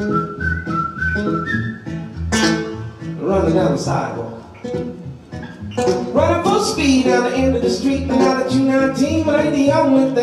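Solo acoustic guitar strummed in a steady rhythm, with a whistled melody over it for the first two seconds, then singing into the microphone over the guitar.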